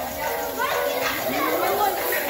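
Children's voices, talking and calling out as they play in a large hall.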